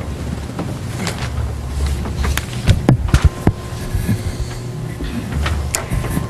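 Meeting-room handling noise: a steady low rumble with scattered knocks, clicks and rustles, a cluster of them about halfway through, as people move about and a podium microphone is reached for.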